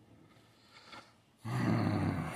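A man's low, rough, throaty grunt, starting about one and a half seconds in after a near-silent pause and fading out slowly.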